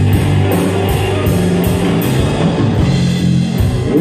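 Live rock band playing an instrumental passage: electric guitars over a heavy bass line and a drum kit, with steady evenly spaced cymbal strokes.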